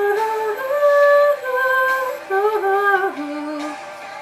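A young woman singing a wordless vocal run, a string of held notes that climb and then step down, ending on a lower held note just before the end.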